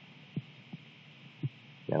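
Three short, soft low thumps over a faint steady hiss, then a man's voice starts right at the end.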